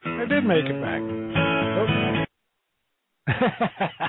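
Closing bars of a country-blues song with acoustic guitar and a voice, ending on a held chord that cuts off abruptly about two seconds in. After a second of dead silence, a man's voice starts talking.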